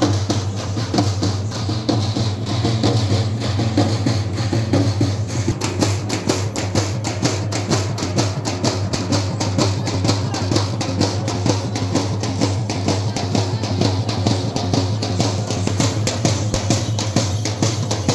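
Procession drums played in a fast, steady beat, with crowd voices underneath.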